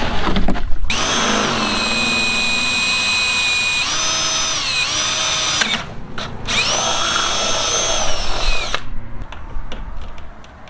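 DeWalt cordless drill with a twist bit boring through a PVC pipe end cap. The motor whine runs steadily for about five seconds, its pitch sagging for a moment as the bit bites, then stops. A second, shorter run of about two seconds follows.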